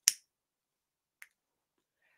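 A single short, sharp click at the very start, then a much fainter click a little over a second later, with near silence between.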